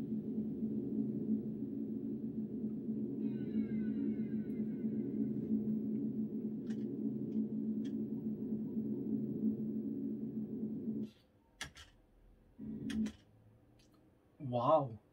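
Low, steady synthesizer drone from the close of the song playing on the computer, with a brief high sweeping shimmer a few seconds in. It stops abruptly about eleven seconds in, leaving a few faint clicks.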